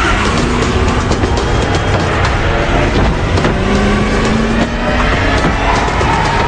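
Car engine and tyre noise from a chase scene, mixed with action music and scattered sharp knocks.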